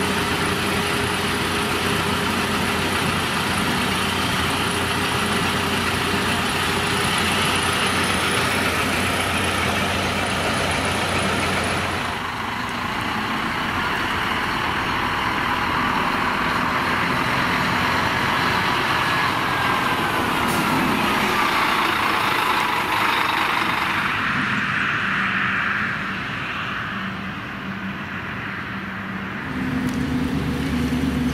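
City buses with engines running, one idling at the stop and others moving off and driving past. A whine rises and falls about two-thirds of the way through.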